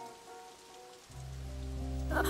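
Steady hiss of heavy rain, with a low sustained music note coming in about a second in.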